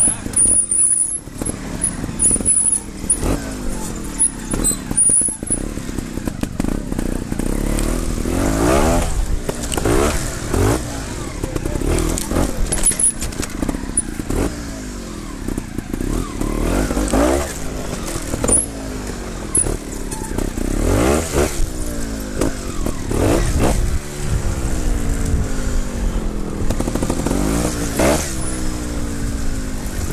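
Trials motorcycle engine at low speed, blipped again and again: the revs rise in short bursts every couple of seconds and fall back to a low putter in between as the bike is picked over rocks.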